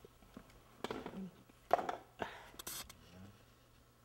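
Quiet, indistinct speech: a few short words between pauses, with a brief hiss just past the middle.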